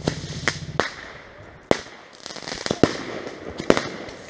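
Consumer fireworks going off close by: about eight sharp bangs at uneven intervals, some in quick pairs. The single loudest one comes a little before the middle.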